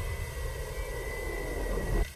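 A horror-trailer sound effect: a loud, sustained rumbling roar with a thin, high steady whine running through it.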